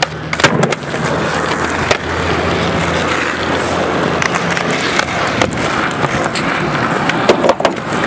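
Skateboard wheels rolling on rough concrete with a steady rumble, broken by sharp clacks of the board popping and landing, the loudest about half a second in and a quick cluster near the end.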